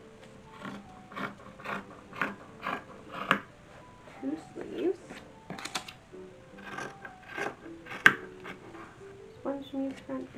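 Fabric scissors cutting cotton cloth in short snips, about two a second at first, mixed with the rustle of the cloth being handled, and a sharp click about eight seconds in. Faint music plays underneath.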